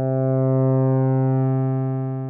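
A held synthesizer note: a Moog Mother-32 sawtooth through a Rossum Evolution transistor-ladder low-pass filter, with resonance set close to self-oscillation and the Species drive turned up, distorting it inside the filter circuit. It is a steady low, buzzy tone whose top end dulls slowly while the loudness swells a little and eases.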